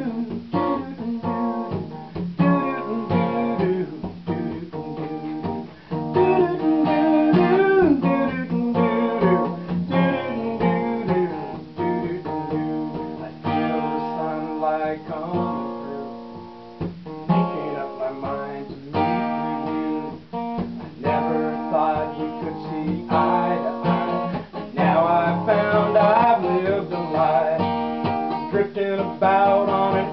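Acoustic guitar strummed and picked, playing a steady run of chords.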